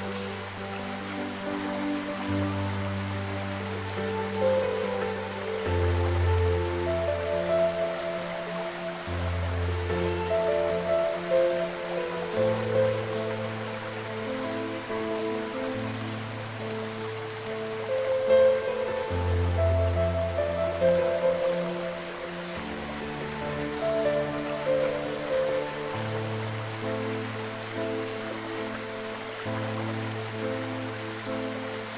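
Slow, soft piano music with long held notes and a bass note changing every second or two, over the steady rushing noise of a waterfall.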